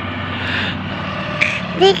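A three-wheeled CNG auto-rickshaw's engine running steadily as it approaches on the road, a constant low hum under road noise.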